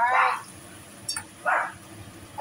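A pet dog barking, once at the start and again about a second and a half in, and not stopping: it is barking because someone is making a delivery.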